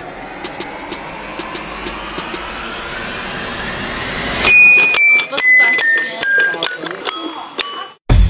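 Edited sound effects: a whoosh rising steadily in pitch for about four and a half seconds, dotted with light clicks, then a run of bright bell-like notes stepping down in pitch, the loudest part, cut off abruptly just before the end.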